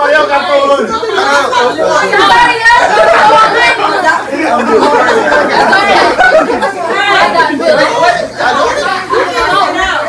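Loud, excited chatter: several people talking and calling out over one another, so no single voice stands out.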